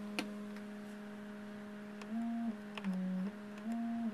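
PAiA 9700 analog synthesizer oscillator holding a steady low note, then bent by the pitch wheel: up about two seconds in, then below the starting note, back, and up again. The bend now goes both above and below the note, showing that the summing-amp correction of the positive-only pitch-bend CV is working.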